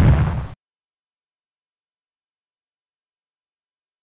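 The rumbling tail of an explosion cuts off about half a second in, leaving a single steady high-pitched tone that slowly fades.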